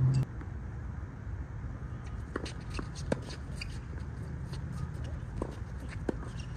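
Tennis ball knocks on an outdoor hard court: a handful of sharp, irregular pops of racket strikes and ball bounces, the loudest about three seconds in, over a low steady background rumble.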